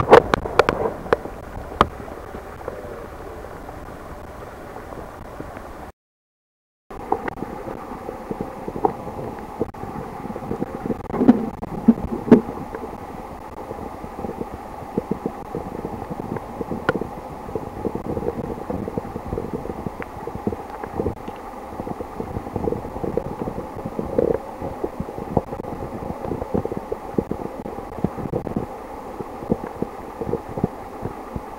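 Muffled underwater sound picked up by a submerged camera: a steady dull rumble with frequent small clicks and knocks, a few louder knocks at the start and about eleven seconds in, and a brief dropout about six seconds in.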